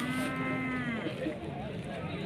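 A bovine mooing: one short moo about a second long, pitch gently rising and then falling.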